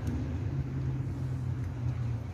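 Car engine idling: a steady low hum.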